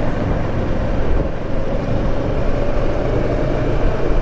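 Riding noise on a Kawasaki Versys 650: wind rushing over the microphone and the parallel-twin engine running steadily at road speed.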